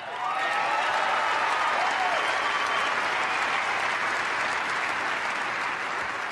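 Large convention-hall crowd applauding, starting suddenly and holding steady, with some cheering voices over the clapping in the first few seconds.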